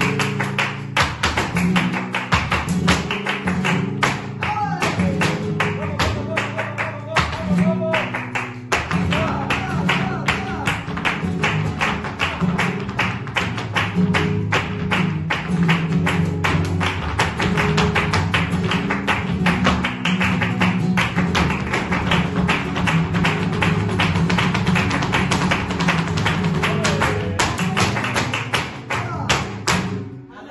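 Live flamenco music: guitar with a dense, fast run of sharp percussive taps, loud and driving, stopping abruptly at the very end.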